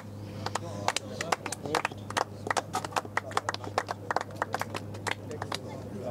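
Scattered clapping from a small golf gallery after a tee shot: many separate, irregular claps rather than a steady wash of applause.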